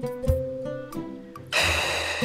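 Background score: sparse plucked-string notes, then the music turns suddenly louder and fuller about one and a half seconds in.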